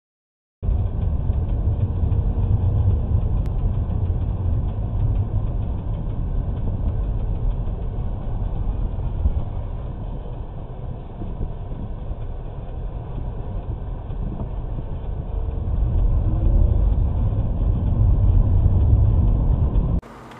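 Car engine and road noise heard from inside a moving car through a dashcam's dull, low-quality microphone: a loud, steady low rumble that starts abruptly about half a second in.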